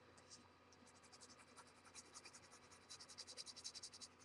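Number two graphite pencil shading on paper: faint, quick back-and-forth scratching strokes, several a second, growing a little louder near the end.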